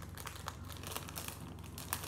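Small clear plastic bag crinkling in the hands, with light scattered crackles as fingers search inside it.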